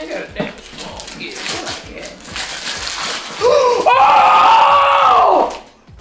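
Wrapping paper being torn and rustled off gifts for the first three seconds or so, then a long, loud excited scream from a woman reacting to what she has unwrapped.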